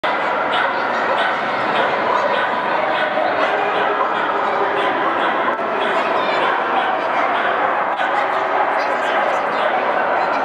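Dogs barking repeatedly over the steady chatter of a crowd, echoing in a large hall.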